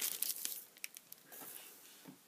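Packaging crinkling and rustling as hands rummage through a box of wrapped items, dying away after about half a second, followed by a few faint clicks.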